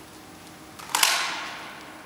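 A single gunshot about a second in: a sharp crack followed by an echoing tail that dies away over most of a second.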